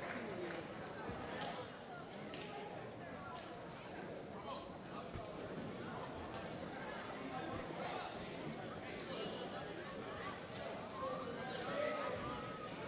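Quiet gymnasium ambience with faint crowd chatter echoing in the hall. A few sharp knocks come in the first seconds, then a string of short, high sneaker squeaks on the hardwood court through the middle.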